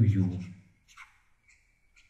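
A few faint, brief scratches of a stylus handwriting on a pen tablet, in the second half after a spoken word ends.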